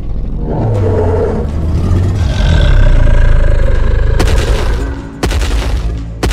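Film sound effects for a computer-generated Tyrannosaurus rex: a long, loud, low roar that swells for about three seconds, then two heavy booms about a second apart.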